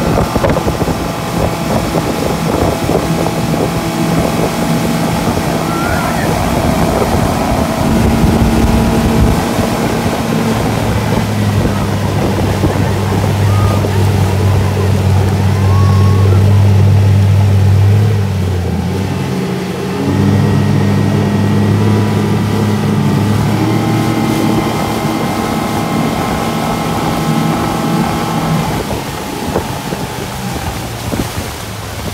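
Yamaha 115 outboard motor running under way while towing an inflatable ride, with the rush of the boat's wake and wind on the microphone. The engine note dips briefly about two-thirds of the way through, then picks back up at a slightly different pitch.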